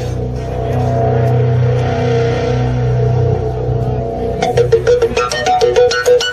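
Live rock band opening a song: slow, held chords ring steadily, then about four and a half seconds in a sharp, rhythmic beat comes in with plucked guitar notes over it.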